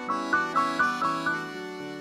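Accordion and electric keyboard playing an instrumental passage: a quick run of repeated notes, about four a second, gives way to a held chord about one and a half seconds in.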